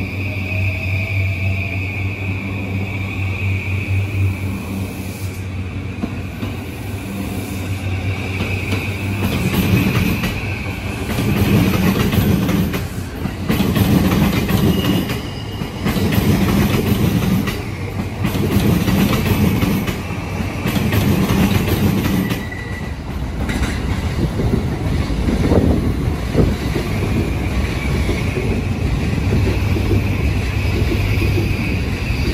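E235-1000 series electric commuter train pulling out along the platform. A steady hum with a faint rising whine gives way, about ten seconds in, to louder wheel-on-rail noise, a heavier rumble coming round roughly every two seconds as the cars gather speed over the track.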